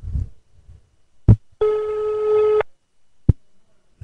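Telephone ringback tone played through a mobile phone's speaker into a microphone: one steady ring of about a second, with a short click just before it and another about a second after. The called number is ringing and has not been answered.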